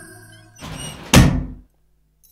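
A wooden door is pushed open with a short scrape and bangs with one heavy thud just over a second in, as background music fades out.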